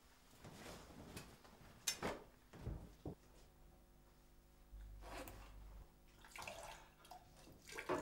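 Faint, intermittent splashing of water at a bathroom sink as hands and arms are rinsed under the tap. A few sharp knocks come about two to three seconds in.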